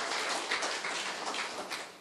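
Faint, scattered clapping from a congregation, a hiss of many light claps that dies away.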